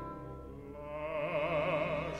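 An orchestra holds soft sustained chords, and about a second in an operatic voice enters, singing a held note with wide vibrato that grows louder.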